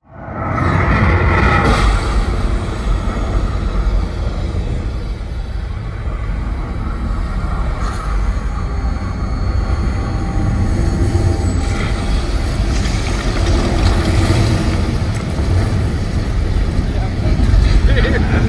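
Loud, deep, steady rumble from a film soundtrack's spacecraft engines, played over a huge venue's sound system. Voices are heard briefly at the start.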